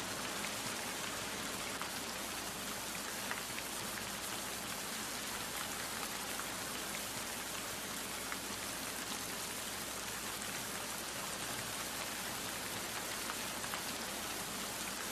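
Steady, even rain-like hiss with scattered faint ticks, holding one flat level throughout.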